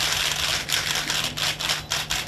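Rapid, overlapping shutter clicks from several press cameras firing at once, a dense clatter of many clicks a second.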